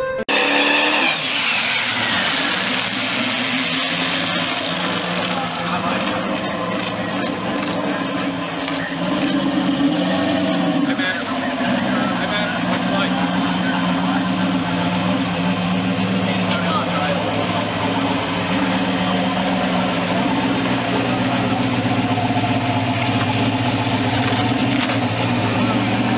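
Turbocharged Camaro drag car's engine running at a steady idle, with a brief rise and fall in engine pitch about ten seconds in.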